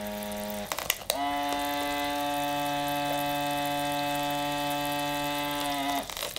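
Battery-powered portable air pump (bait aerator) running with a steady electric hum. About a second in, a few clicks of its button switch it to its other speed, and it hums louder at a different pitch. It cuts off just before the end.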